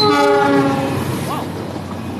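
A diesel locomotive's horn sounds once for about a second as the locomotive passes close by, then fades, while the passenger coaches behind it keep rolling past over the rails.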